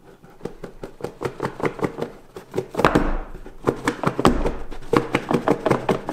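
Snug-fitting cardboard box lid being worked up off its base by hand: a rapid, irregular run of small clicks and cardboard-on-cardboard scraping, denser about three seconds in and again near four seconds.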